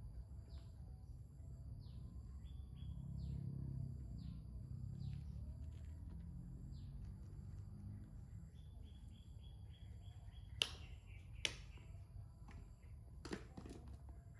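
Birds chirping in the background, short falling chirps repeating about once a second, with a quick run of chirps about nine seconds in, over a steady high insect-like whine. Three sharp clicks stand out near the end.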